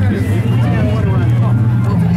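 Crowd chatter, many overlapping voices, over a steady low hum.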